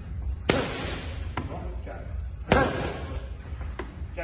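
Boxing gloves smacking leather focus mitts: two hard punches about two seconds apart, with lighter hits between and near the end.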